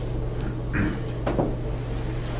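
Steady low hum in a small room, with two brief faint sounds about three-quarters of a second and a second and a half in.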